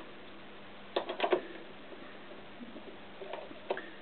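A few light metallic clicks: a quick cluster of three or four about a second in and two fainter ones near the end, as the flywheel of a Honda CX500 engine is handled and fitted onto the crankshaft.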